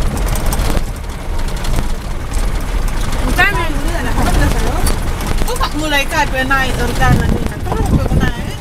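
Becak motor (motorcycle-sidecar tricycle) running along a farm track, a steady low rumble of engine and wind on the microphone. A voice talks over it twice, about three and six seconds in.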